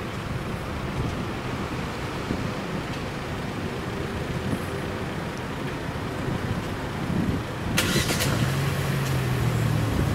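Steady road-traffic noise. About eight seconds in, a car engine starts with a short burst of noise and settles into a steady low idle.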